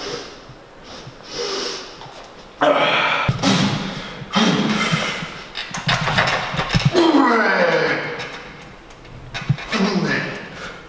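A man straining out loud through a heavy set on a plate-loaded chest press machine: loud grunts and forced breaths. They start about two and a half seconds in and end near eight seconds on a cry that falls in pitch.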